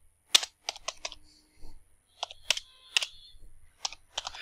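Computer keyboard being typed on: a dozen or so short key clicks at an uneven pace.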